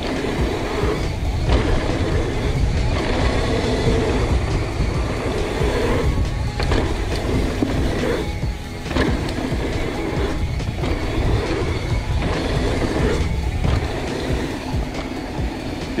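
Background music over the steady rumble of a mountain bike rolling fast on a dirt flow trail: knobby tyres on packed dirt and wind buffeting the handlebar camera's microphone. The trail noise dips briefly several times along the run.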